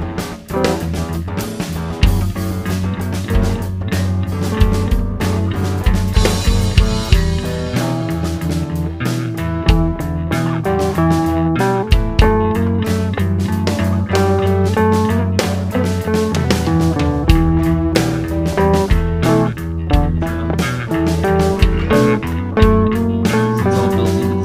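A band playing an instrumental passage: guitars over bass guitar and a steady drum beat, with no singing.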